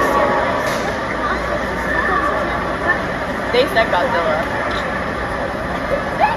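Arena crowd chatter over the steady rumble of a large vehicle engine as the tracked Megasaurus machine drives across the dirt floor, with a few voices calling out about halfway through.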